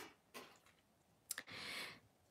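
Faint small clicks and a short soft rustle from handling a nail tip on its plastic stick in gloved hands.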